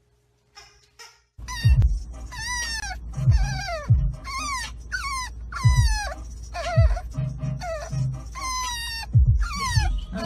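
French bulldog puppy whining over and over, starting about a second and a half in: a string of high cries that each slide down in pitch, over the low rumble of a car cabin.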